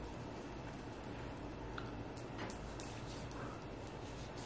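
Quiet room with faint handling sounds: a few soft small clicks and rubbing as liquid skin tint is squeezed from its tube into the hand and spread with the fingertips.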